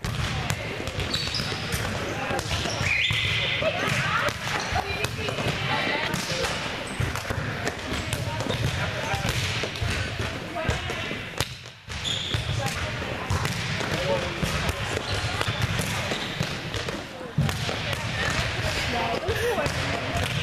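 Volleyballs being hit and bouncing on the court floor of a gym, with many sharp knocks, under indistinct chatter of players and coaches. The sound breaks off briefly about twelve seconds in and resumes in the same way.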